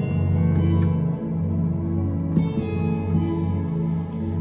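Electronic keyboard playing full, sustained minor chords with a soft pad sound under the piano, changing chord a little over halfway through.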